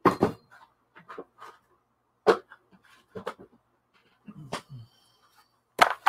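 A clear plastic compartment organizer box being handled and set down on a table: a string of irregular sharp plastic clicks and knocks.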